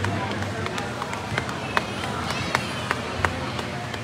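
Voices of players and spectators talking in a gymnasium, with several sharp smacks of a volleyball being hit and bouncing on the court floor in the second half.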